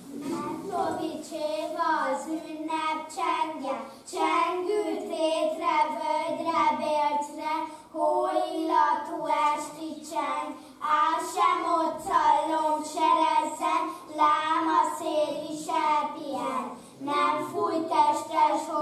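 A group of children singing together, in sung phrases of a few seconds with short breaks between them.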